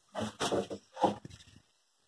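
An animal calling: three short calls in quick succession in the first second and a half.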